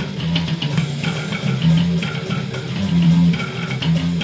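Electric bass played fingerstyle, a fast metal bass line, along with a death metal song's guitars and drums.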